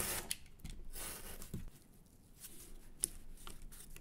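Light taps and rustling of thin cardboard strips being handled and pressed down side by side onto glued cardboard, with a few small clicks.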